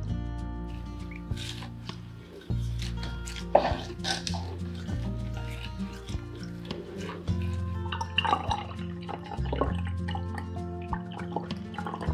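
Background music of sustained low notes, with liquid dripping and trickling as lilac-soaked water is strained through a plastic sieve and the flowers are pressed with a wooden spatula.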